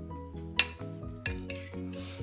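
A metal spoon clinking against the bowl and the aluminium pressure-cooker pot as jaggery syrup is scraped in: a few sharp clinks, the loudest about a third of the way in. Steady background music plays under it.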